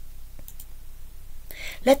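A short pause with a low steady hum and a couple of faint clicks about half a second in, then a woman begins speaking in Italian near the end.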